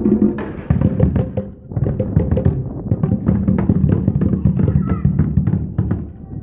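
Children's percussion: drums beaten with sticks and plastic percussion tubes struck together, giving a fast, irregular clatter of strikes with a brief lull about one and a half seconds in.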